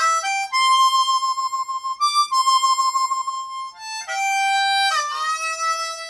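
Solo diatonic harmonica in F, played cross harp in the key of C: a quick rising triplet of draw notes, then long 6-hole blow notes shaken with hand vibrato and broken by a short 6 draw. It steps down through the 5 blow and 4 draw to a scooped 3 draw, bent and let up into pitch near the end.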